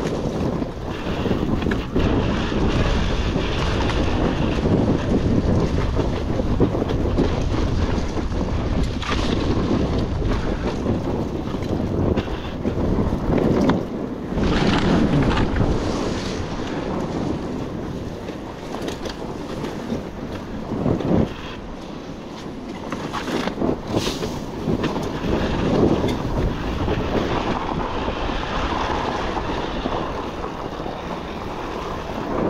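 KTM EXC 300 TBI two-stroke dirt bike engine running steadily as the bike is ridden over a rough, stony trail, with occasional knocks from the bike bouncing over the ground. Wind buffets the microphone throughout.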